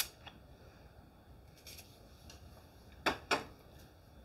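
Two quick spritzes of hairspray from a hand-held spray bottle, about three seconds in, with a faint click at the very start.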